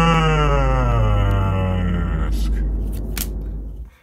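A voice holding one long, drawn-out "Tuuuk" call, the Boston fans' cheer for goalie Tuukka Rask, slowly falling in pitch over a heavy distorted bass rumble. The voice stops about two seconds in, and the rumble cuts off abruptly just before the end.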